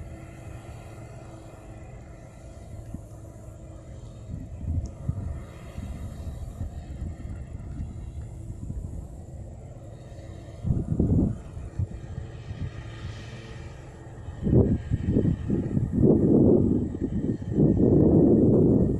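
Low, uneven outdoor rumble with no clear source, surging about eleven seconds in and growing louder over the last few seconds.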